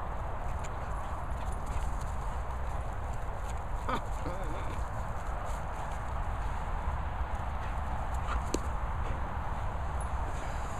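Dogs running and playing on grass, with one short, wavering dog whine about four seconds in and a sharp click later on, over a steady low rumble on the microphone.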